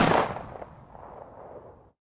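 A single loud bang at the very start, ending the outro guitar music, then a reverberant tail that fades away over nearly two seconds and cuts off.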